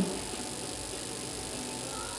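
Faint, steady room tone of a large hall, with no distinct sound standing out.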